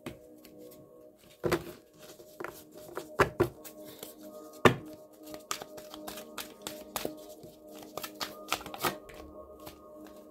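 A deck of oracle cards being shuffled and handled: a run of quick papery clicks and slaps, with louder slaps about one and a half seconds in and near the middle. Soft background music with sustained tones plays under it.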